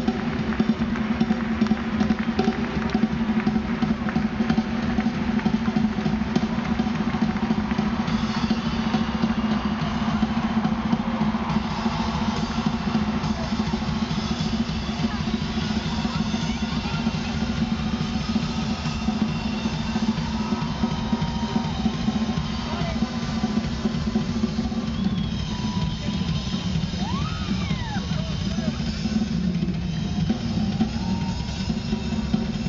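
Live drum solo on a large acoustic drum kit: dense, continuous playing across bass drum, snare, toms and cymbals, heard from the audience in a large concert hall.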